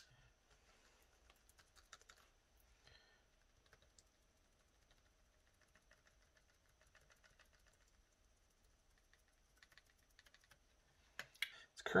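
Faint, scattered light clicks and taps of a paintbrush in a plastic paint palette and a sponge dabbing paint onto small plastic parts, otherwise close to silent.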